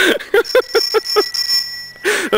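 Bicycle bell ringing: a high, steady ring that starts about half a second in and holds to the end.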